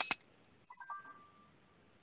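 A small bell rung with a quick jangle of strikes at the start, its high, bright ring fading within about a second, followed by a fainter, lower ting about a second in.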